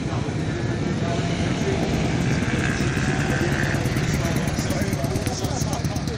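Sand-track racing motorcycle engine running steadily at low revs, with voices talking over it.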